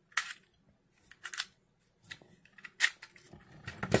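A series of short, sharp plastic clicks, about six spread over a few seconds, as the clear revolver-style bit cartridge is taken out of a WESCO chamber-load cordless screwdriver.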